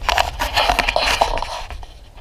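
A burst of rustling, crackling noise lasting about a second and a half, fading near the end.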